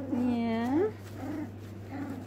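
A Cavalier King Charles Spaniel puppy gives one drawn-out whine, under a second long, that rises in pitch at its end, during rough play with its littermates.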